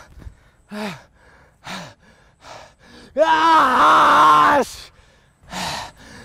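A man's short pained gasps and groans, then a long, loud, drawn-out cry of pain about three seconds in, and one more gasp near the end.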